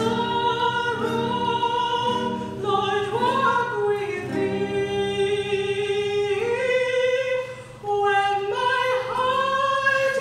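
A woman singing a slow song in long held notes, accompanied by a classical nylon-string guitar; she breaks briefly for a breath near the end.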